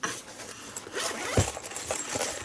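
A zipper being pulled open on a fabric carry case, a continuous rasp, with a soft thump about one and a half seconds in.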